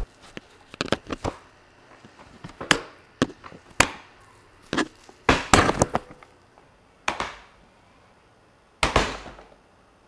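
Musso Navigator gaming chair's backrest recline mechanism clanking and clicking as it is unlocked and the backrest is pushed through its preset locking angles and straightened up. It gives a string of sharp knocks, some with a short ring, the loudest near the middle and near the end: a stiff stepped lock that takes effort to release.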